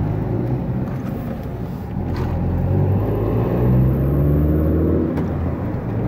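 Car engine and road rumble heard from inside the cabin while driving. About halfway through, the engine pitch rises as the car accelerates onto the road.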